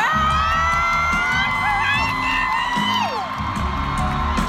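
Live pop concert music in an arena, with a band's bass pulsing under a long high held note that slides down after about three seconds. Audience members whoop and cheer over the music.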